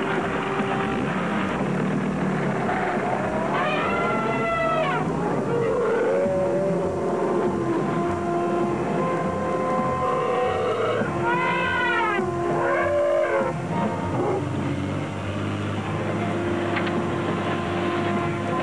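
Background score with held notes, over which an African elephant trumpets: one call about four seconds in and another about seven seconds later, each rising and falling in pitch and lasting about a second.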